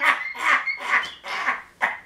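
A man laughing hard in quick breathy bursts, about four a second.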